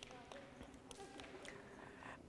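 Near silence: quiet gymnasium room tone with faint children's voices and a few light clicks.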